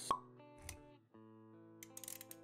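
Animated-intro music with sound effects: a sharp pop right at the start and a soft low thud just after, then sustained musical notes resume after a brief drop about a second in, with a few light ticks near the end.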